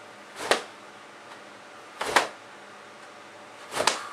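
A towel swung hard through the air three times, about every second and a half, each a short whoosh rising to a sharp smack as it strikes the back at the waistline.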